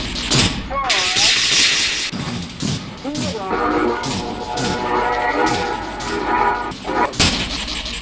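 Experimental music with a beat, mixed with shortwave radio tuning sounds from a Hallicrafters receiver: bursts of static hiss and warbling, gliding whistles about a second in and again about three seconds in, as the dial sweeps across stations.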